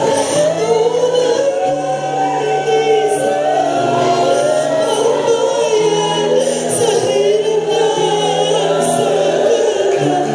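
Mixed choir of men and women singing a slow, solemn worship song in harmony, with long held low notes beneath the melody.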